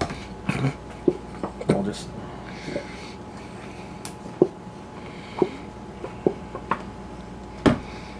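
A glass bottle of avocado oil handled on a tiled counter: a string of light clicks and knocks as its cap is screwed on and it is put down, with one louder knock near the end.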